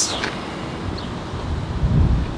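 Wind buffeting the microphone: a low, uneven rumble that grows stronger near the end.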